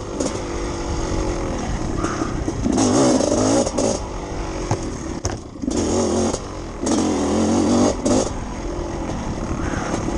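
Two-stroke dirt bike engine being ridden hard, revving up and down with the throttle. There are louder bursts of throttle about three, six and seven seconds in, and a brief drop off the gas just past five seconds.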